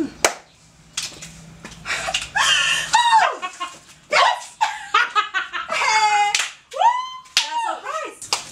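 Women's voices in wordless, exaggerated cries and laughter: a run of short calls that swing up and down in pitch, one after another. A few sharp slaps or claps come in the first two seconds.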